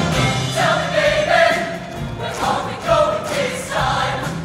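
Mixed show choir of young men and women singing together, with live band accompaniment.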